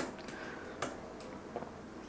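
Two light, sharp clicks, one at the very start and one just under a second later, with a few fainter ticks over quiet room tone.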